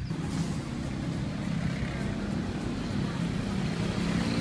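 Steady low rumble of city street traffic, with no clear events standing out.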